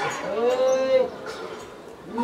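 An animal's single drawn-out call, its pitch rising slightly and falling back, lasting under a second.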